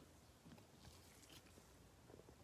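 Near silence, with a couple of faint soft rustles of a trading card being handled in a clear plastic sleeve by gloved hands.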